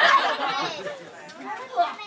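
Several people talking over one another, loudest in the first half second.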